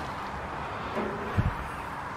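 Steady outdoor background noise, with one faint low thump about one and a half seconds in.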